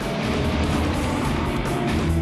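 Background music over a steady rushing engine noise from a Bombardier CL-415 Super Scooper water bomber.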